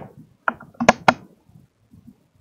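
Three sharp clicks in quick succession, a softer one followed by two louder ones about a fifth of a second apart.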